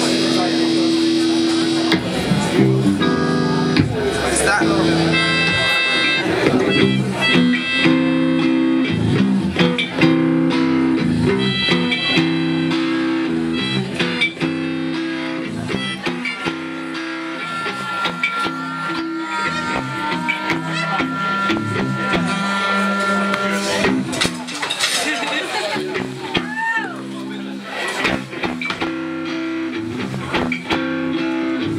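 Live band music: electric guitar over sustained drone notes that hold steady throughout, with a long held higher note in the middle and short sliding tones near the end, and a voice among the instruments.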